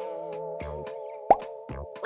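Background music: a held, wavering chord over a few soft beat hits, with a short rising pop sound effect a little past halfway, the loudest moment.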